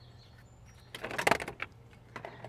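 Jump starter's alligator clamp and cable being handled: a short burst of clicks and rattling about a second in.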